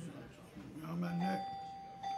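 Steady electronic alarm tone from hospital equipment, starting about a second in and holding on one pitch, with a low voice beneath it.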